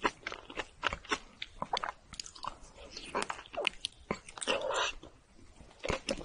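Close-miked chewing of a soft fruit-filled rice cake: a dense, irregular string of short mouth clicks and smacks, with a longer noisy stretch about four and a half seconds in.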